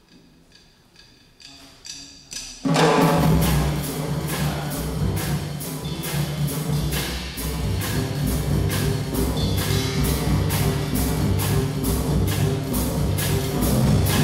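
Live jazz band: light, evenly spaced cymbal taps, then about three seconds in the whole band comes in loud together, drum kit, upright bass and horns, on an up-tempo hard-bop tune.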